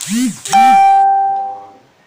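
A loud chime: a brief sweeping sound, then about half a second in a single clear ringing tone that fades out over about a second.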